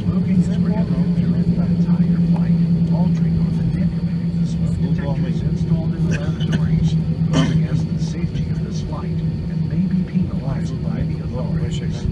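Steady low hum inside an Airbus A320 cabin while the airliner taxis, its engines running at idle, with indistinct voices over it.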